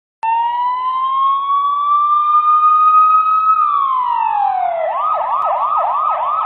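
Electronic emergency vehicle siren, starting abruptly: a slow rising wail that drops away about three and a half seconds in, then switches to a fast yelp of roughly three sweeps a second.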